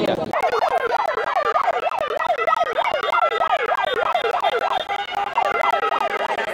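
A siren wailing in a fast up-and-down warble, its pitch sweeping high and low about three times a second.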